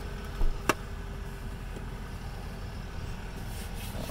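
A 2016 Toyota Camry's engine idling steadily, with a short thump and a sharp click within the first second.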